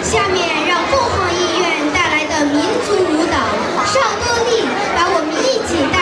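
A girl speaking into a handheld microphone, her voice amplified through a PA loudspeaker in a large hall.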